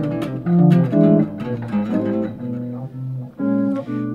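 Clean-toned hollow-body archtop electric guitar playing an improvised single-note jazz line in A minor, with enclosures and chromatic approach notes around the A minor triad.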